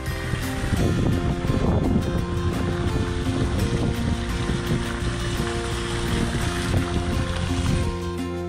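Background music over a steady rush of fountain water and wind on the microphone; the water and wind noise cuts off suddenly at the end.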